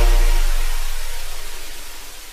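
Electronic DJ logo sting: a deep bass boom under a gritty, buzzing noise wash that fades out steadily.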